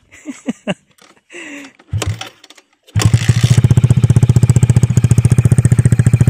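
Kawasaki KSR Pro's 110 cc single-cylinder four-stroke engine being started on a weak battery: a few brief sputters, then about three seconds in it catches. It runs steadily through a custom exhaust with a rapid, even pulse.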